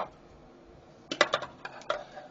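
Small sharp clicks from a handheld Cammenga USGI lensatic compass, beginning about a second in as a quick, uneven run of about eight clicks.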